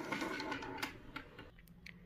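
Makeup tubes and plastic cosmetic packaging handled on a tabletop: a rustle, then a few light clicks and taps.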